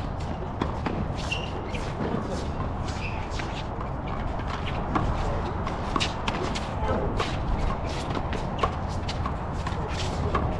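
Sneakers scuffing, squeaking and stepping on an outdoor hard handball court, with sharp slaps of a small handball off the concrete walls and players' gloved hands, coming thicker in the second half. A steady low rumble runs underneath.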